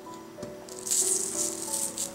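Millet flour sprinkled by hand onto parchment paper: a high, rattly hiss starting just under a second in and lasting about a second. Soft background music with sustained tones runs underneath.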